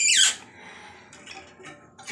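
A short squeal falling steeply in pitch, as the toilet's supply shut-off valve is turned closed, followed by faint small handling sounds.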